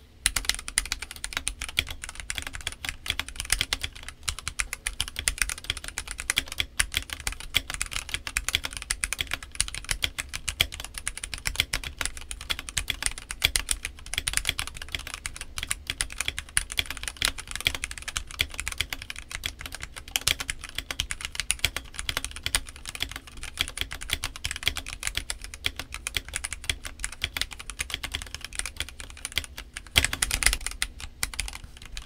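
Steady fast typing on a stock Redragon K641 Pro Shaco, an aluminium-cased 65% mechanical keyboard with Redragon Red linear switches and double-shot PBT keycaps: a dense, unbroken stream of keystroke clacks.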